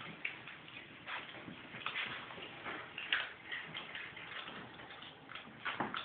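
A small dog and a ferret eating dry food side by side: faint, irregular crunches and clicks of kibble, with a slightly louder click near the end.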